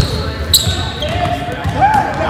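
A basketball dribbled on a hardwood gym floor: two bounces about half a second apart.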